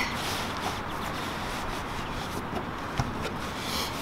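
Nylon main parachute canopy rustling and rubbing as it is S-folded and pressed flat by hand to squeeze the air out, with a single knock about three seconds in.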